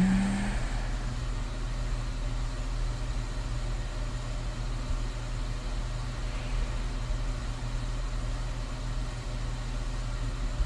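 Steady low hum of a background ambient noise track, unchanging throughout.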